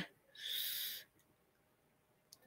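A person's short, breathy exhale, a soft hiss lasting under a second.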